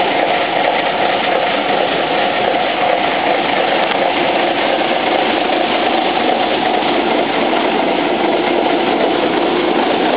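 Škoda 706 RTHP fire tanker's six-cylinder diesel engine idling steadily.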